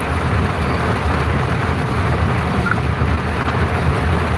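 Steady low rumble of a vehicle's engine and running noise, heard from inside the passenger cabin of a public utility vehicle.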